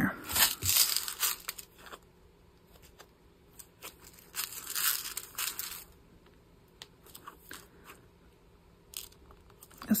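Crinkling and rustling of a small clear plastic bag of silver jump rings being handled, in several bursts: one at the start, a longer one around the middle, and short ones near the end.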